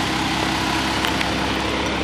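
Steady low hum of a running engine, like a vehicle idling, holding even throughout.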